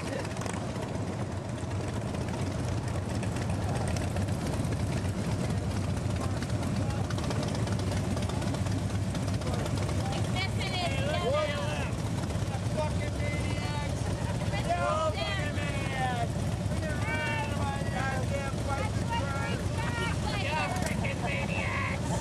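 Harley-Davidson motorcycles' V-twin engines running with a steady low rumble, heard from on one of the bikes. From about ten seconds in, people's voices come and go over the engine noise.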